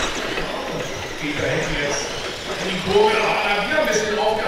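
Men's voices talking indistinctly, race commentary and chatter that carries on through the whole stretch.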